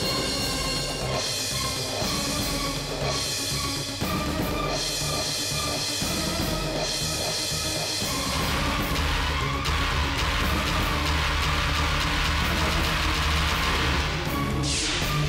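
Dramatic background music: held tones with swelling rushes about every two seconds, building into a denser, fuller wash from about eight seconds in.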